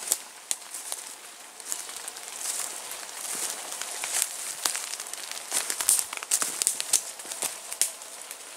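Footsteps pushing through woodland undergrowth: irregular crackling and snapping of twigs and leaves underfoot, with rustling of brushed vegetation, busiest in the second half.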